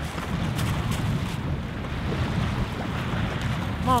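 Wind rumbling on the microphone over small waves washing onto a pebble beach, a steady noise throughout.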